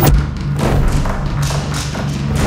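Dramatic background music: a sustained low drone with heavy drum thuds, the sharpest one right at the start.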